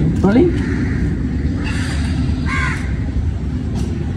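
A crow caws once, about two and a half seconds in, over a steady low rumble.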